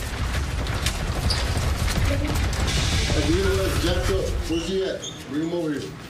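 Men's voices, not clear enough to make out, over a steady low rumble and scattered clicks and clatter. The voices get clearer in the second half, and the rumble drops away about five seconds in.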